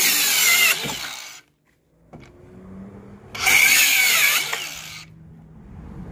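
DeWalt DCS571 cordless 4-1/2-inch circular saw cutting pressure-treated deck boards, two cuts. The first cut finishes under a second in and the blade winds down; after a short gap the saw spins up again, makes a second loud cut about three and a half seconds in, and winds down toward the end.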